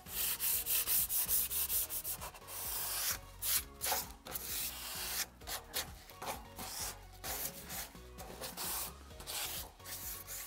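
Sanding pad rubbed by hand over a painted steel panel radiator in repeated back-and-forth strokes, a little louder in the first couple of seconds. It is a light sanding of the dried second coat to take off dust specks that settled in the paint.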